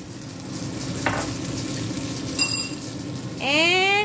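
Tortang talong batter of mashed eggplant and egg sizzling as it fries in oil in a frying pan while it is poured in and pushed about with a spatula, with a couple of light clinks. Near the end comes a short rising voice-like sound.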